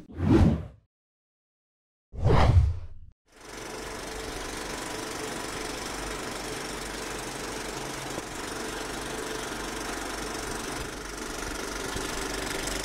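Logo-animation sound effects: a short whoosh fading just after the start, another about two seconds in, then a steady, even noisy drone with a faint hum under the production-company logo sting.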